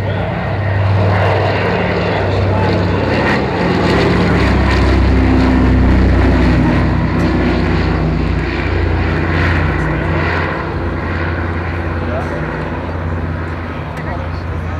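Twin radial piston engines of a Consolidated PBY Catalina droning as it flies low past overhead. The drone is loudest near the middle and drops in pitch as the aircraft passes, then eases off as it banks away.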